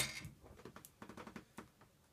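A sharp click at the start, then a string of faint clicks and rustles as a small plastic tub and its packing are handled.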